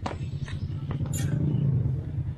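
Steady low rumble of wind and road noise on a handlebar-mounted camera while a bicycle is ridden, with a couple of faint clicks.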